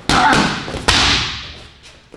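Two hard strikes landing on a super heavy punching bag, about a second apart. Each is a sharp thud followed by a trailing echo that fades over most of a second.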